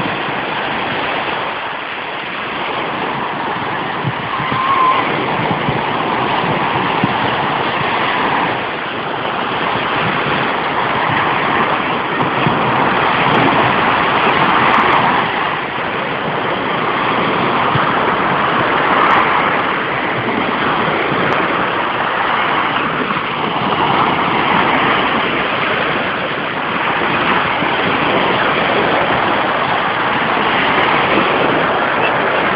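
Small surf breaking and washing up a sandy beach: a continuous rushing noise that swells and eases every few seconds.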